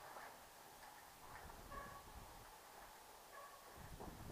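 Near silence: faint footsteps scuffing on a gritty concrete floor, with two brief high chirps, one near the middle and one near the end.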